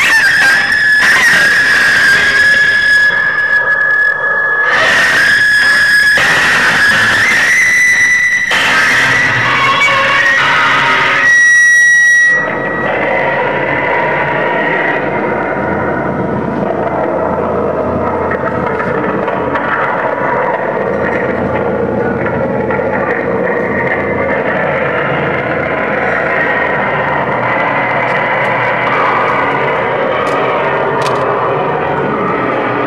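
Live noise music from electronics run through effects pedals. A piercing, steady feedback tone sits over choppy bursts of noise for about the first twelve seconds, then cuts off abruptly into a dense, lower, churning drone that runs on.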